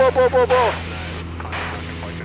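Super Decathlon's engine and propeller droning steadily at full power, heard inside the cockpit as a low, even hum. A voice repeats a short syllable rapidly through the first moment, then the hum is left alone.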